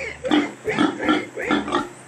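Young domestic pigs grunting in a string of short, separate bursts.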